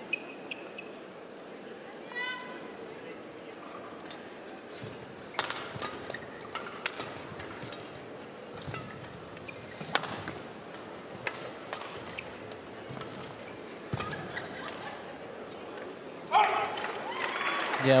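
Badminton rally in a large hall: sharp cracks of rackets hitting the shuttlecock, roughly one a second, with a few short shoe squeaks on the court. Near the end the crowd breaks into cheering and applause as the rally ends on a shot left to land out.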